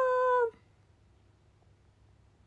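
A young woman's voice holding a long, drawn-out vowel at the end of a spoken 'arigatou', which stops abruptly about half a second in. Then near silence: room tone.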